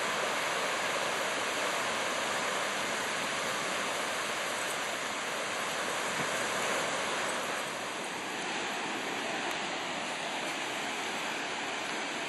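Ocean surf breaking and washing onto a sandy beach: a steady rush of waves, slightly quieter from about two-thirds of the way through.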